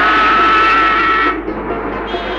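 A vehicle horn sounding one long steady blast of about a second and a half, which cuts off suddenly, over background music.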